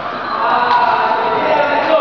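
Voices talking in a reverberant indoor sports hall, with two short sharp clicks a little over a second apart from the badminton play.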